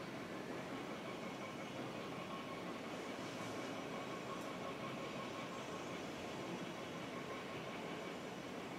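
Steady background noise with a faint hiss: room tone, with no distinct events.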